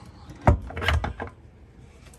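Overhead wooden cabinet door on spring-loaded lift hinges being pushed shut: a thud about half a second in, followed by a lighter knock just after.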